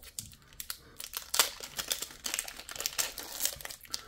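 Foil-wrapped Magic: The Gathering collector booster pack crinkling in the hands, with irregular sharp crackles as the wrapper is handled and pulled open at its seam.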